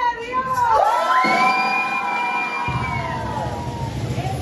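Children shouting and cheering together in a party crowd, with a long high held shout in the middle.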